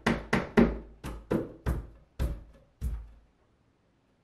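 A wooden floating shelf knocked by hand onto its dowels against the wall: about eight sharp wooden knocks in quick, uneven succession, stopping a little past three seconds in as the shelf seats.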